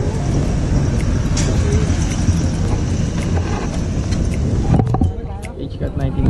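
A motor vehicle engine running close by, a steady low rumble, with voices faint behind it. The rumble drops away sharply near the end.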